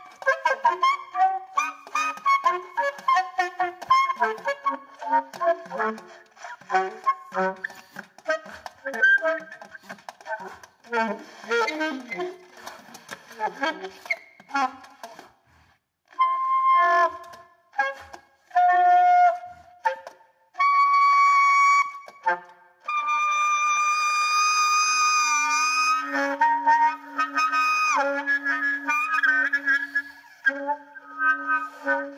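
Solo alto saxophone improvising freely: fast, jagged runs of short notes for about the first half, then a handful of short held notes separated by pauses, and from a little past the two-thirds mark one long sustained tone with a steady low note underneath.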